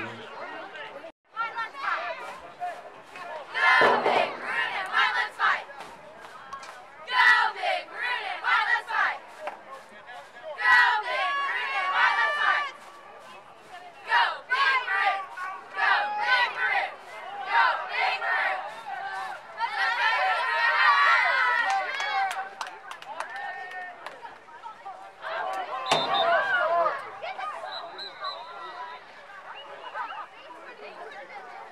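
Crowd voices at a football game: spectators and sideline players talking and shouting over each other, with no clear words. About two-thirds of the way through, several voices call out together.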